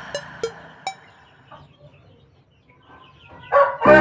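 Music dies away into a quiet stretch with a few faint clicks. About three and a half seconds in, a loud bird call starts, and music comes back in under it.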